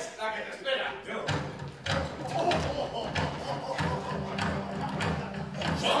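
Actors' voices on a theatre stage with repeated thuds, like boots on the wooden stage floor.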